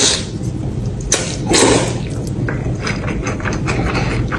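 A person slurping noodles in a few noisy bursts over the first couple of seconds, followed by a run of short, wet mouth and chewing sounds.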